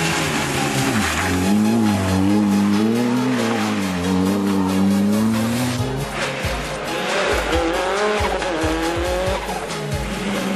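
Rally car engines revving hard, rising and falling through the gears. There is an abrupt change about six seconds in, after which low buffeting thumps come in and a second car's engine revs rise as it approaches.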